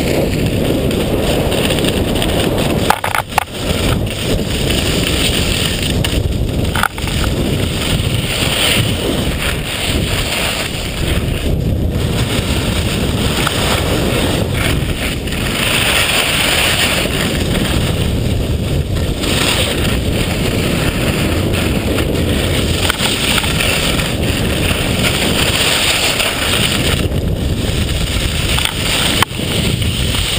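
Loud, steady rush of wind buffeting the camera microphone during a fast ski descent, mixed with skis scraping and hissing over the snow.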